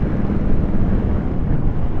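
Wind rushing over the microphone of a moving motorcycle, with the engine and road noise running steadily underneath at a steady cruise.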